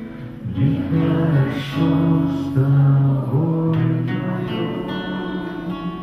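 A man singing a slow song into a microphone with guitar accompaniment, in phrases of long held notes.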